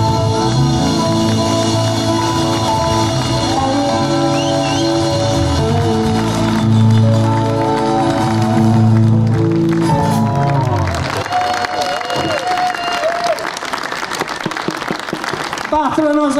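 Live band music ending on held notes, with a round-backed twelve-string acoustic guitar among the instruments. About eleven seconds in, the music stops and audience applause with some voices takes over.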